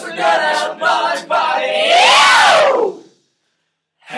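Male a cappella group singing in short rhythmic bursts, then a loud sung swoop that rises and falls in pitch about two seconds in; the sound then drops out to dead silence for the last second.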